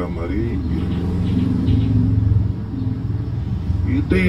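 A steady low rumble, like a nearby motor vehicle, under a man's faint, murmured speech.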